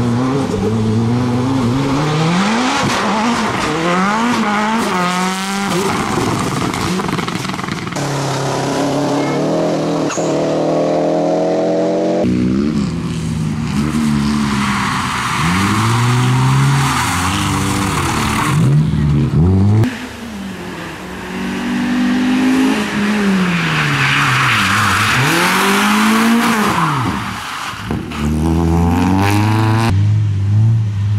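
Rally cars driven hard one after another: engines revving up and falling back through the corners with gear changes, the sound jumping abruptly from one car to the next, with tyres squealing at times.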